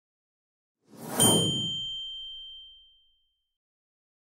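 Animated subscribe-button sound effect: a short noisy swish about a second in, then a single bright bell-like ding that rings out and fades over about two seconds.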